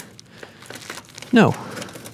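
Faint rustling and small clicks of hands working a control box and its wiring into the sheet-metal housing of a diesel space heater, interrupted by one short spoken word.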